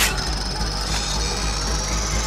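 Film soundtrack of a monster attack: a steady, tense wash of score and sound effects with a thin high whine that rises slowly.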